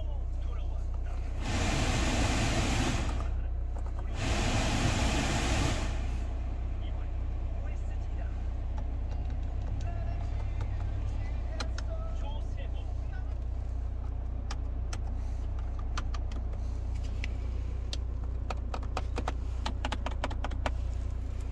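Engine idling inside the cabin of a 2013 Hyundai Santa Fe, a steady low hum, with two loud bursts of rushing noise in the first six seconds. From about eight seconds on, a run of sharp clicks as climate-control and console buttons are pressed.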